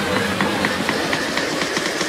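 Electronic background music in a stripped-back section: the bass drops out at the start, and a quick repeating high note plays over a ticking rhythm.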